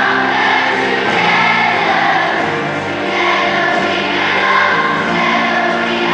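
A massed children's choir of thousands singing together in long held notes, with the wash of a large arena's echo.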